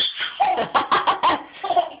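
A toddler laughing, a run of quick, high-pitched laugh bursts one after another.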